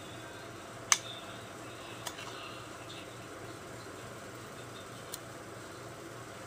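Steady low room hum with a few sharp clicks: a loud one about a second in, and two fainter ones later.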